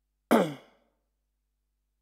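A man's short sigh-like vocal exhalation, a breathy voiced sound that falls in pitch and fades within about half a second.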